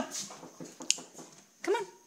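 Dog whining in short whimpers, the clearest one near the end, with a single sharp click about a second in.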